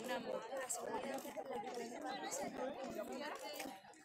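Background chatter of a walking crowd: several voices talking at once in Spanish, none clearly in front.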